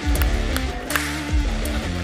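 Band music with guitar, bass and drums playing a steady beat.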